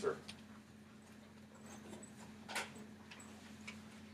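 Quiet classroom room tone: a steady low hum with a few faint scattered taps and rustles, the clearest about two and a half seconds in, from students writing and pressing calculator buttons.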